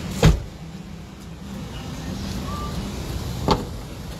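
Two sharp thumps, a loud one just after the start and a softer one about three seconds later, over a low steady hum.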